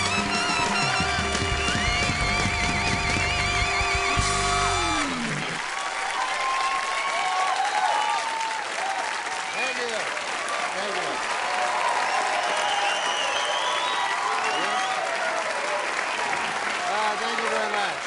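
Band music with held notes that ends about five seconds in on a falling note. Then a studio audience applauds and cheers, with scattered shouts and whoops.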